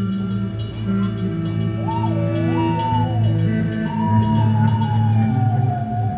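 Live band music: a slow, sustained drone of held low chords, with a high, wavering line that glides up and down over it from about two seconds in.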